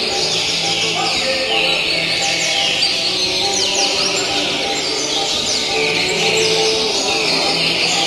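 A chorus of caged seedeaters (coleiros) singing at once, many quick whistled phrases overlapping without a break, with a low background murmur underneath.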